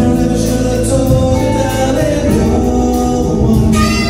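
A live jazz-funk band playing: electric bass, electric guitars, drums and saxophone with a sung vocal line, the fuller upper parts of the band coming in near the end.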